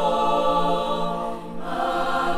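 Mixed-voice school choir singing held chords, the sound dipping briefly about one and a half seconds in before the next chord enters.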